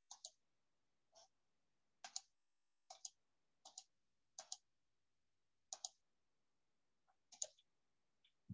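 Faint computer mouse clicks: about eight clicks at irregular intervals of roughly a second, most heard as a quick double tick of the button pressing and releasing.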